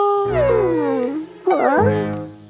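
A cartoon character's whimpering, whining moan that falls in pitch, then a shorter wavering whine near the end, over children's background music.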